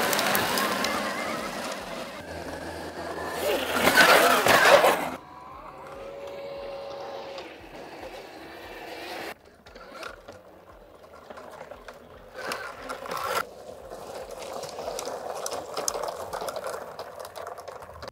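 Honda CRF-E2 electric dirt bike being ridden on dirt, with no engine note: a faint electric motor whine under the hiss of tyres and dirt. The noise is loudest in the first five seconds, then quieter and uneven with scattered ticks.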